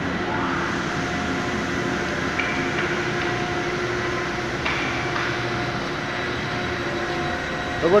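Factory machinery running with a steady hum and a few held tones, in a board mill turning recycled paper and cardboard into shoe insole board.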